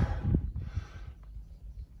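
A man's voice trails off, then a pause with faint background noise over a steady low rumble.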